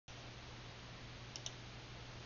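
Quiet room noise with a steady low hum and hiss, and two quick faint clicks close together about a second and a half in.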